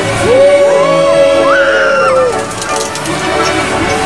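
A long held yell of about two seconds from a rider on a spinning amusement ride, pitch rising at the start and dropping off at the end, with shorter rising cries over music playing in the park.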